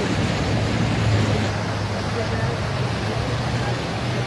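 Flash-flood water rushing through a desert wash, a loud, steady churning of turbulent water with a constant low rumble underneath.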